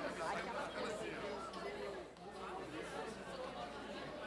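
Indistinct chatter of several people talking at once, a low-level murmur of overlapping conversations.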